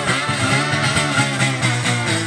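Acoustic guitar played solo in an instrumental passage of a blues-rock song, a quick run of plucked and strummed notes with no singing.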